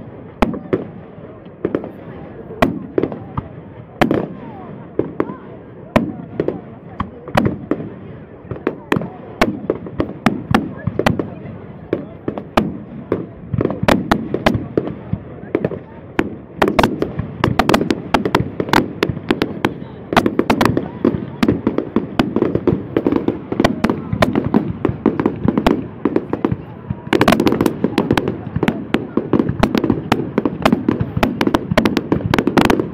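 Fireworks display: aerial shells bursting in sharp bangs and crackles, about one a second at first, then coming thicker and faster from about halfway, with a dense barrage near the end.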